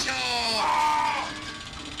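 A long, drawn-out vocal sound that slides down in pitch, with a held higher tone in the middle, from a music track built from sampled voice snippets. It fades out over the second half.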